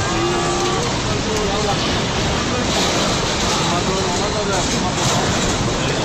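Tsunami floodwater rushing through a town, a steady loud torrent carrying cars and debris, with long wavering calls and shouts from people rising over it several times.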